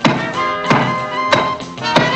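Cartoon axe chops biting into a tree trunk, sharp thunks evenly spaced about two-thirds of a second apart, in time with a playful orchestral music score.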